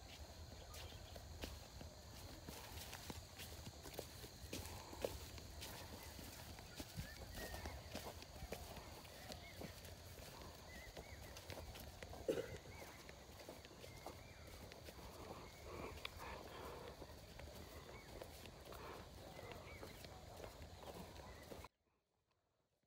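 Faint footsteps on dry tilled soil with scattered light crackles of plastic mulch film being laid along a bed, over a low steady rumble. The sound cuts off suddenly near the end.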